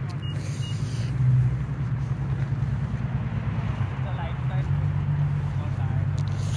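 A steady low motor hum, swelling briefly louder about a second in.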